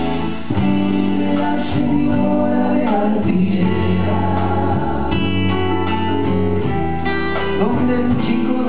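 Live rock band playing, with acoustic guitars strumming and voices singing.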